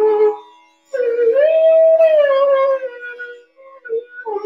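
Bansuri (bamboo flute) playing a phrase of Raga Kedar over a steady drone. A short phrase ends just after the start; after a brief pause a long note slides up, is held, then sinks slowly back down, and a short note comes near the end.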